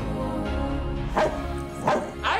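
Trailer background music, with a small dog barking twice in the second half.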